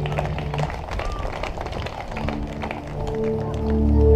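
Live band music starting up: a low held note dies away early, light taps and clicks follow, and about two seconds in a sustained chord swells in and grows louder.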